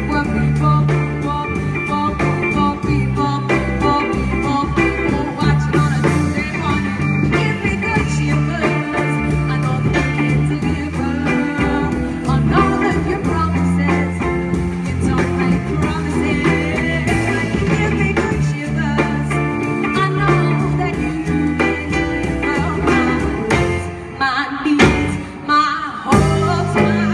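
A live band playing a song, with a singer, electric guitar, keyboard and drums over a steady, repeating bass line. The playing dips briefly near the end, then carries on.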